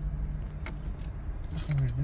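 Car engine running, heard inside the cabin as a steady low rumble, with a faint click about two-thirds of a second in.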